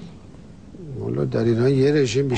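Quiet room tone, then about a second in a man's voice sets in, drawn out and wavering in pitch, with no clear words.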